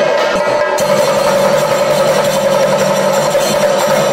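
Chenda drums of a temple percussion ensemble playing fast, dense rolls for a thidambu nritham dance, with a steady held tone over them.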